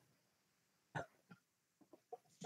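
Near silence, with one faint, short sound about a second in.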